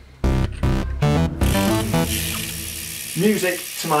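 Electronic music with a beat ends about a second and a half in. After it comes the fine, continuous ratcheting buzz of a bicycle rear wheel's freewheel as the wheel spins, with the pawls clicking too fast to count. A man's voice starts near the end.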